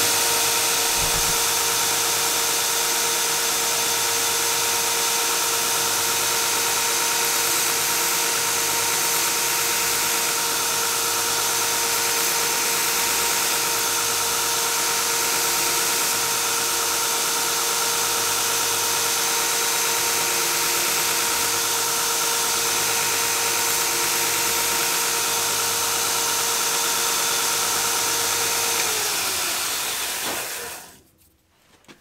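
Belt grinder running with a 120-grit belt over a soft silicone contact wheel: a steady motor whine over belt hiss. It is switched off near the end and winds down, its whine falling in pitch.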